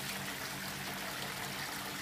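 Water running steadily through a Gold Cube sluice on its recirculating pump system, a constant trickling flow with a low steady hum underneath.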